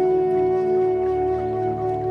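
Bansuri (bamboo flute) holding one long, steady note over a soft sustained drone: slow new-age meditation music.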